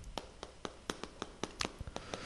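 Chalk writing on a chalkboard: a quick, irregular run of faint taps and clicks, about a dozen in two seconds, as the chalk strikes and drags through the strokes of each character.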